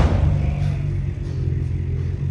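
Wolf growling low and steady.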